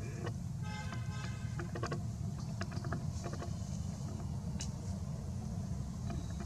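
Steady low rumble of outdoor background noise, with scattered short clicks and chirps and a brief buzzy pitched call about a second in.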